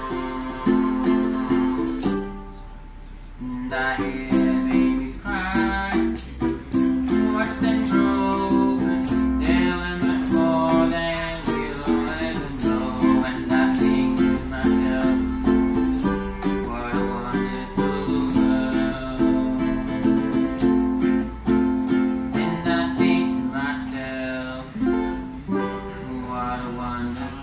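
Ukulele strummed in a steady rhythm with a wavering melody line carried above it and sharp ticks marking the beat. The playing drops out briefly about two seconds in, then picks up again.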